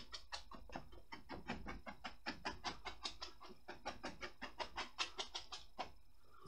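Bristle brush loaded with oil paint working against a stretched canvas in quick short strokes, a soft scratchy tapping about seven times a second.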